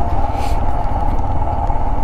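Royal Enfield Himalayan's single-cylinder engine running steadily while the motorcycle rides along, with a brief hiss about half a second in.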